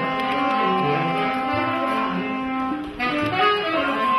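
Instrumental band music: sustained melodic notes over a moving bass line, changing abruptly about three seconds in.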